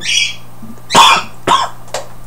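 A man coughing twice, a loud cough about a second in and a shorter one half a second later.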